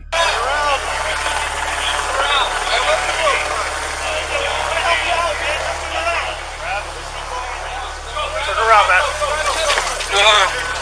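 Several voices talking and calling out, with a steady low hum beneath, recorded on a police body camera.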